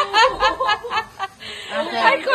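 A young woman laughing excitedly in quick high-pitched bursts, about five or six a second, breaking off a little past halfway; a voice starts again near the end.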